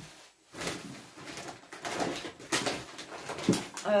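Rustling and crinkling of plastic food packaging and a shopping bag being handled, in irregular bursts.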